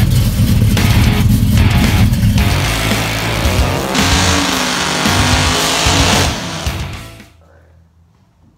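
Heavy rock music, then from about two and a half seconds in a drag car doing a burnout: engine revving with the rear tyres spinning, fading out near the end.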